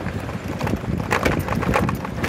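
Wind buffeting a handheld phone microphone on the move: a steady low rumble with scattered knocks and clicks from handling.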